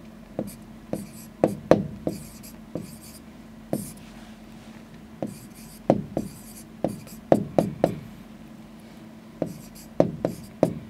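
Stylus writing on a touchscreen display: a run of irregular sharp taps as the pen strikes the glass, with faint scratchy strokes between some of them.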